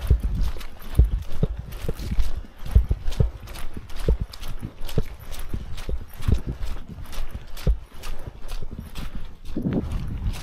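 Brisk walking footsteps of hiking shoes on a gravel and dirt trail, a steady rhythm of about two steps a second.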